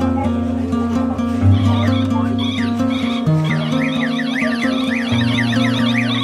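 Background music: held bass notes that change every second or two, under quick repeating high figures that run up and down.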